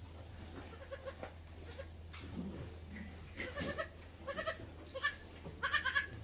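Newborn Mini Silky Fainting goat kids bleating: a run of short, high-pitched bleats in the second half, the last and loudest right at the end.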